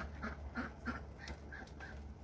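Domestic ducks giving a run of short quacks, about three a second, fading out near the end.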